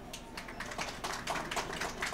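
Audience applauding: many quick, irregular hand claps that begin within the first half second.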